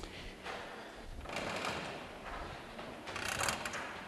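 A sharp click at the very start, then two bursts of rustling about a second and a half in and again near the end, over low room noise.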